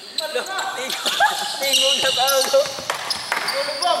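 Basketball game on a hardwood gym floor: the ball bouncing, sneakers squeaking in short high chirps, and players calling out, all ringing in a large, mostly empty hall.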